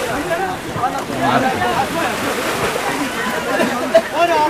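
People talking and calling out, over water sloshing around an inflatable boat.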